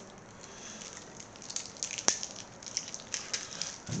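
Faint crackling and small clicks of packaging being handled, with one sharp click about two seconds in.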